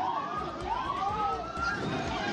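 Emergency vehicle siren wailing in overlapping rising and falling sweeps, over the voices of a crowd.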